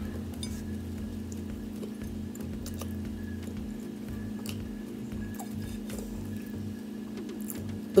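Faint, scattered mouth clicks of someone chewing a soft bread roll with her mouth closed, over a steady low hum.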